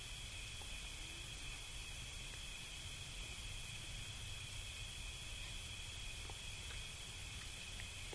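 Faint, steady background during a pause in speech: a low hum and hiss under a continuous high-pitched note.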